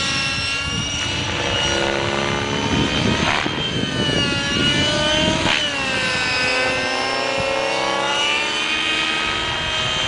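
Radio-controlled model helicopter in flight: a steady high whine of motor and rotors made of several tones, its pitch sliding down and back up as it manoeuvres, with quick swoops in pitch about three and a half and five and a half seconds in.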